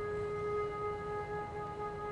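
Concert flute holding a single long, unaccompanied note.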